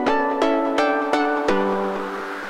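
Background music: a bright melody of plucked string notes, about three notes a second, each ringing briefly and fading.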